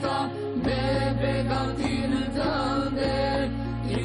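An ilahi, an Islamic devotional song: a sung melody with ornamented, bending phrases over a steady low drone.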